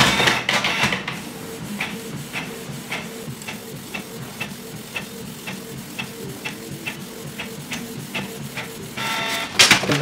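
Canon G3012 ink tank inkjet printer printing a colour page. The print head moves back and forth with regular clicks about twice a second over a steady motor hum, after a louder start as the sheet is drawn in, and it grows louder again near the end.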